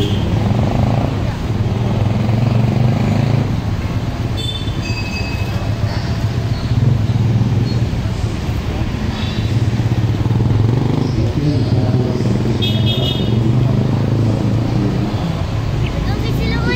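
Steady city street traffic: vehicle engines, motorcycles among them, running and passing without a break. Two short high tones cut through about four seconds in and again near thirteen seconds.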